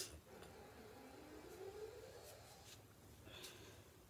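Near silence: faint room tone, with a faint wavering tone in the first half and a short soft breath about three seconds in.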